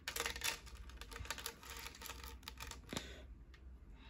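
Small plastic LEGO bricks clicking and rattling as pieces are picked from a pile and pressed together: a quick run of light clicks, busiest in the first three seconds and sparser after.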